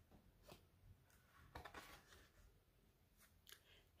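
Near silence, with a few faint, short rustles and clicks as a board book's thick page is turned over.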